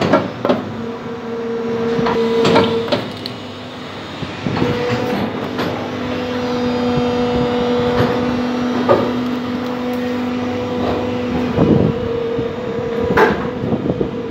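Injection moulding machine running: a steady hum with a strong pitch and one overtone that drops out briefly about three seconds in, with scattered sharp knocks and clanks of metal parts.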